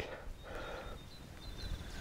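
Faint rustling and scraping of gloved hands in loose soil as a surveyor's flag wire is pushed into the ground, over a faint low rumble.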